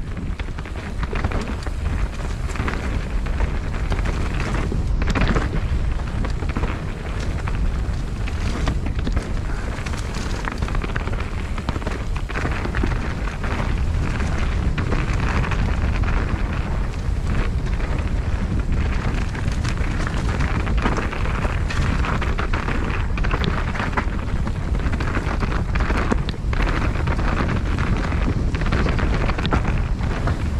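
Mountain bike riding fast down a dirt singletrack: tyres rolling over rough ground with constant rattles and knocks from the bike over bumps, under a heavy rush of wind on the camera microphone.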